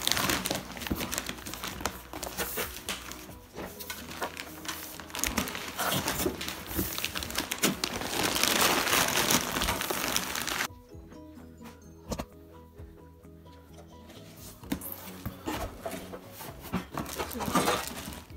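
Paper and cardboard packing crinkling and rustling as it is handled and pulled out of a new air fryer's drawer. It drops away sharply a little past halfway, leaving faint music for a few seconds, then the crinkling starts again near the end.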